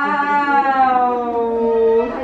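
A person's voice holding one long drawn-out "eeee" sound, its pitch sinking slowly, then breaking off.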